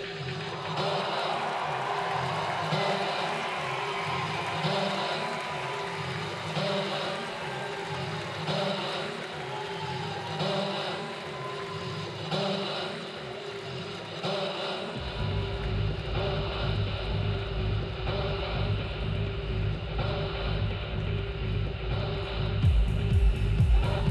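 Live electronic music in a breakdown: the drums drop out, leaving repeating synth chords. A deep bass line comes back in about two-thirds of the way through, and hi-hats return near the end as the beat builds back.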